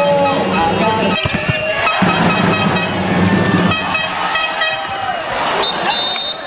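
Handball crowd noise in a sports hall with fans sounding horns in long, steady blasts, one held to about a second in and another from about two seconds in to nearly four. A short high whistle sounds near the end.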